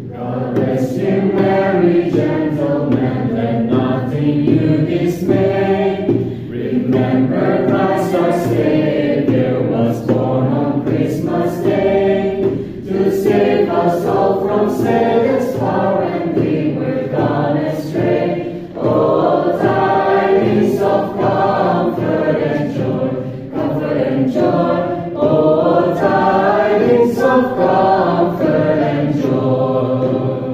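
A large group of young voices singing a Christmas carol together, phrase after phrase with short breaths about every six seconds.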